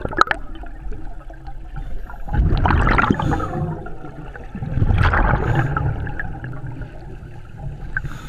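Scuba diver's exhaled breath bubbling out of a regulator exhaust, heard through a camera underwater: two long bubbling rushes a couple of seconds apart, each lasting over a second.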